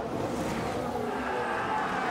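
Formula 1 car engine noise, a steady blend of several engine tones under a hiss.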